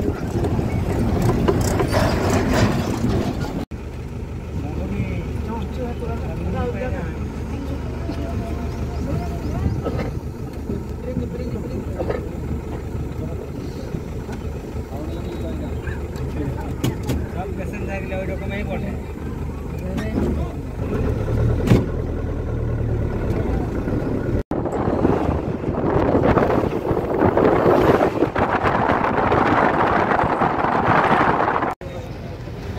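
Road and wind noise from riding in a moving vehicle, with voices in the background. The sound breaks off and changes abruptly twice, and the noise is loudest in the last few seconds.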